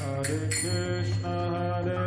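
Kirtan: devotional chanting in long held, sung notes that change pitch a couple of times, with no cymbal or drum strokes in this stretch.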